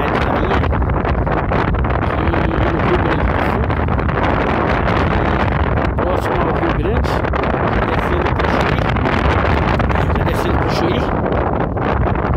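Strong wind buffeting the camera's microphone, a loud, steady rumbling rush that covers everything else.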